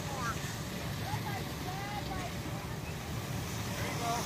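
Faint, high-pitched voices calling out a few times over a steady low rumble, the kind wind makes on the microphone.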